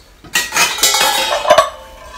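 Pieces of a silver-plated (EPNS) tea set clattering and clinking together as they are handled and set down, with one sharp metal clank about a second and a half in.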